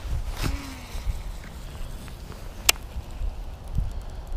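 Baitcasting reel being wound in after a cast, with low rumble of wind and handling on the microphone and a sharp click a little before three seconds in.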